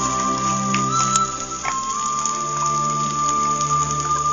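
Background music with long held notes. Beneath it, dry red lentils being poured and spooned from a plate into a metal pot: a steady hiss with a few light ticks in the first two seconds.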